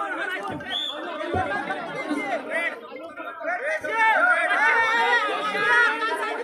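Several men's voices talking over one another at once: chatter among spectators around a wrestling mat.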